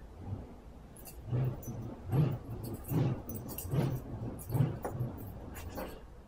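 Lightsaber with a Nano Biscotte soundboard being spun in repeated twirls: its hum swells into a swing sound on each pass, about once every three-quarters of a second.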